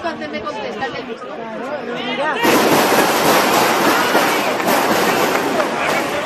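Voices chattering, then about two and a half seconds in a loud, even rushing noise cuts in suddenly and holds to near the end.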